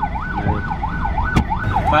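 A siren wailing in a fast, steady up-and-down sweep, about two sweeps a second, over a low traffic and engine rumble. A single sharp click comes about one and a half seconds in.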